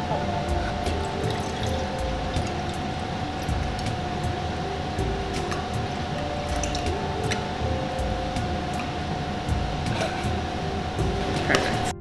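Tea poured in a stream from a paper carton into a glass mason-jar mug, filling it, with background music playing over it.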